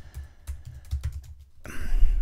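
Computer keyboard keystrokes: several separate key clicks at an uneven pace as a line of code is typed. A short rush of noise comes near the end.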